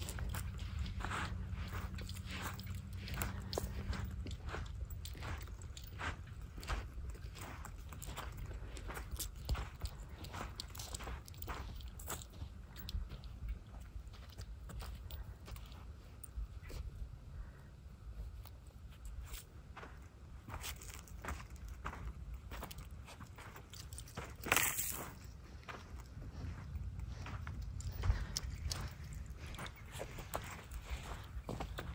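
Footsteps crunching on coarse sand and pebbles, one or two steps a second, over a steady low rumble. One louder scrape about three-quarters of the way through.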